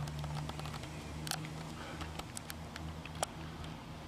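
A handheld camera is handled as it swings round, making scattered light clicks and taps, a sharper one about three seconds in, over a steady low hum.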